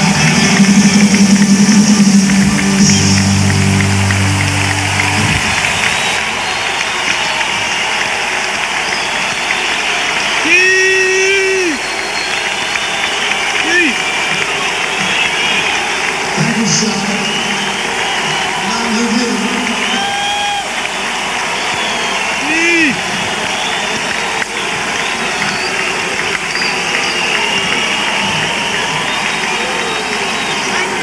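A live rock band's closing chord rings out and stops about five seconds in. An arena crowd then cheers, with single voices yelling and whooping above the din.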